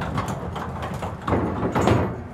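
Aluminum horse-trailer stall partition sliding along its overhead barn-door track: a steady rolling, scraping noise that grows louder near the end as the divider reaches the side wall.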